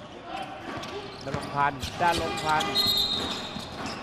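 A man's play-by-play commentary over a basketball being dribbled on a hardwood court during a game, with a brief high squeal about three seconds in.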